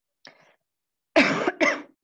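A woman coughing twice in quick succession, two sharp loud coughs a little over a second in, after a faint short sound near the start. It is a lingering cough left over from flu, which she puts down to her asthma being triggered.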